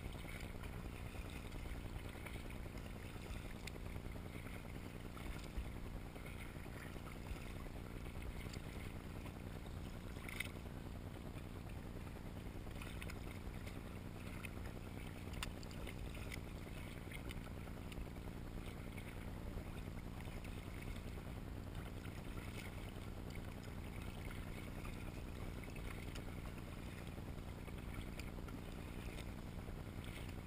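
Steady splashing and lapping of choppy salt water against the bow of a paddled prototype kayak as it moves along, with a couple of faint clicks.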